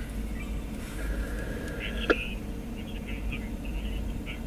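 Steady low rumble inside a parked car's cabin, with a single sharp click about halfway through.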